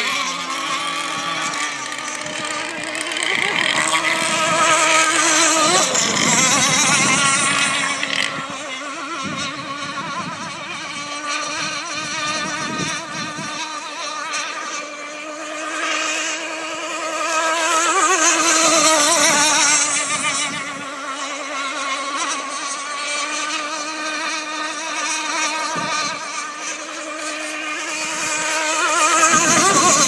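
Radio-controlled racing speedboat engines running at high revs, one high-pitched drone whose pitch wavers up and down as the boats race around the course. The sound swells louder as a boat passes close, a few seconds in, again around two-thirds through, and near the end.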